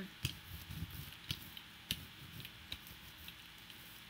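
Hand brayer being rolled over paint-covered brown paper: faint rustling with scattered small ticks and clicks, the sharpest three coming just after the start, about a third of the way in and halfway through.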